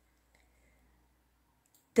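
Near silence in a pause of spoken narration, broken by a couple of faint small clicks; the voice resumes right at the end.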